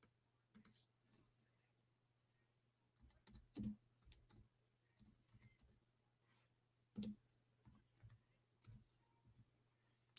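Near silence broken by scattered faint clicks of a computer keyboard, two slightly louder taps about three and a half and seven seconds in, over a faint steady hum.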